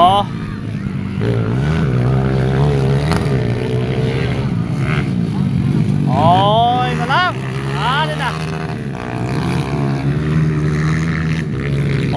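Motorcycle engines running during a dirt-track race: a steady engine drone, with sharp revs rising and falling in pitch as a bike passes close, about halfway through and again shortly after.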